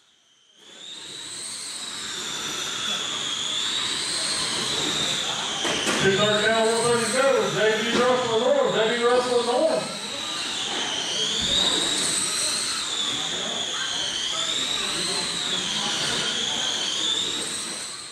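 Electric brushless motors of 21.5 Late Model RC dirt oval cars whining, fading in at the start, the high whine rising and falling in pitch as the cars speed up on the straights and slow for the corners. A voice speaks over them from about six to ten seconds in.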